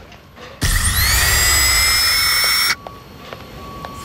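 A loud whirring screech with a whine that rises and then holds steady. It starts about half a second in and cuts off suddenly about two seconds later.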